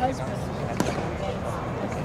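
A single sharp pop of a pitched baseball meeting the plate area about a second in, over ballpark background chatter.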